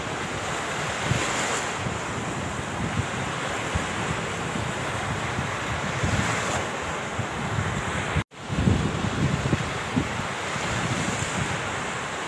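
Sea waves washing against rocks, with wind buffeting the microphone in gusts. The sound cuts out for an instant a little past eight seconds in, then picks up again.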